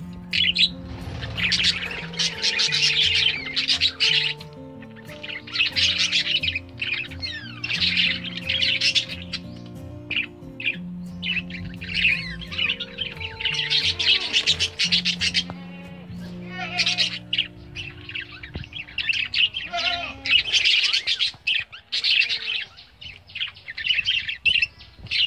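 A group of budgerigars chirping and chattering in repeated bursts of a second or two, with background music underneath.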